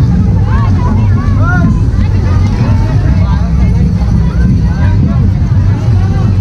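Loud street-parade din: a dense, heavy low rumble from the troupe's drumming, with voices calling and shouting over it.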